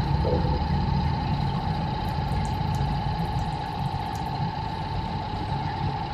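Waterpulse V660 countertop water flosser's pump running, a steady electric hum with a fine rapid ripple.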